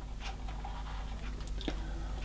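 Quiet workroom with a low steady hum and a few faint small clicks, about three of them spread through the pause.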